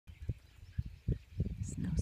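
Birds calling in the background, with one short high chirp near the end, over a run of short low thumps on the microphone. A voice starts right at the end.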